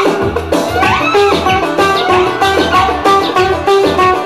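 An oud played in a quick run of plucked notes with sliding pitch bends, over a steady low bass accompaniment.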